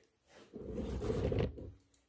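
Plastic packaging tape being pulled and stretched by hand, a low, rough rasp lasting about a second: the tape is tough and hard to tear.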